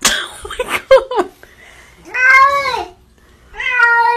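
Domestic cat meowing: two drawn-out meows, each rising and then falling in pitch, about two seconds in and near the end. A short burst of noisier sounds comes first, at the start.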